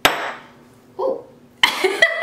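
A drinking glass set down on a hard surface with one sharp clink that rings briefly. A short vocal sound follows about a second in, and laughter begins near the end.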